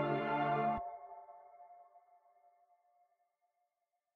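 Ambient music track ending: sustained chords cut off abruptly under a second in, leaving one faint high tone that fades away.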